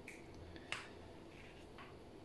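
Faint handling of a comic book in a plastic sleeve as one comic is swapped for the next, with a single sharp click under a second in and a softer tick near the end.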